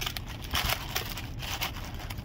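Paper sandwich wrapper crinkling and rustling in short, irregular crackles as a hand presses on and handles a fried chicken sandwich.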